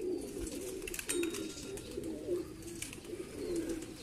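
Domestic pigeons cooing, low wavering coos repeating one after another.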